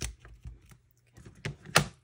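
A quick string of clicks and knocks from handling a photo and a plastic ink pad on a craft mat, the loudest knock near the end as the ink pad is picked up from its tin.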